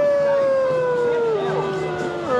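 A person imitating a wolf's howl: one long held call that slowly falls in pitch, then drops lower about one and a half seconds in.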